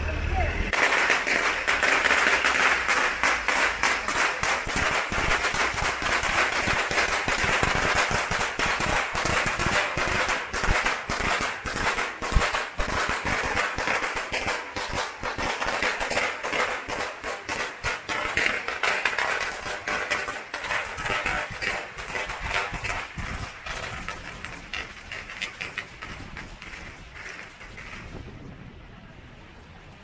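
A long string of firecrackers going off in rapid, continuous crackling pops, starting about half a second in, growing fainter after about twenty seconds and stopping near the end, with crowd voices underneath.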